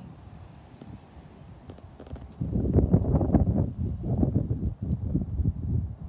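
Wind buffeting the microphone: a low, gusty rumble that starts about two and a half seconds in and lasts about three seconds.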